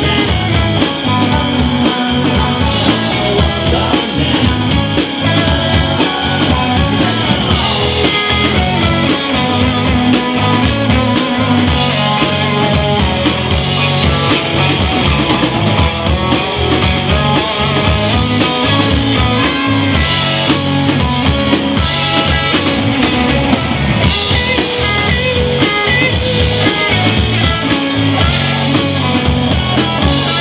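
Live rock band playing at full volume: a drum kit and electric guitars carry on steadily, with no break.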